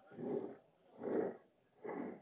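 Three short, soft breathy huffs about a second apart, heard through a telephone line.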